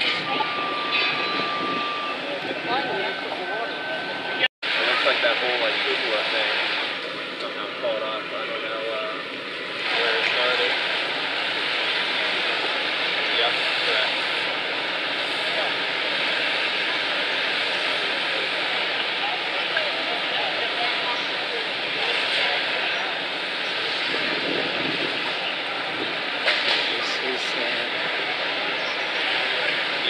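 Steady roar of fire apparatus engines and pumps running, with hose streams spraying water at a working structure fire. The sound drops out for an instant about four and a half seconds in.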